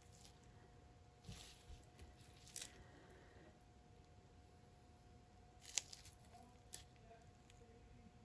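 Near silence with a few faint handling noises: gloved hands picking up and turning a wet, paint-covered tile, with soft clicks and rustles, the sharpest just before the six-second mark. A faint steady hum lies underneath.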